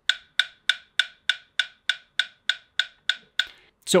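Time Guru metronome app playing through a phone's speaker: a steady beat of identical clicks, about three a second, that stops just before the end.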